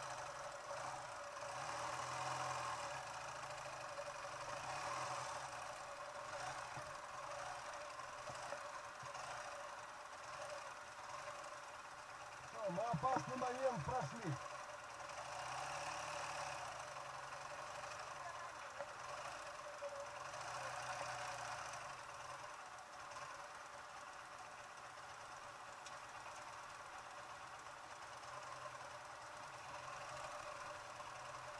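Ural sidecar motorcycle's flat-twin engine running at low revs while it rolls slowly over rough grass. About halfway through comes a louder passage of about two seconds with a changing pitch.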